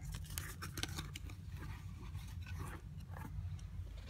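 Handling noise from a leather handbag being moved about: soft rustles, scrapes and small clicks scattered throughout, over a faint steady low hum.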